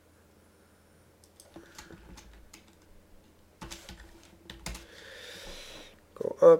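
Faint computer keyboard typing and clicks: a scattered run of key taps starting about a second in and going on for about four seconds, over a steady low hum.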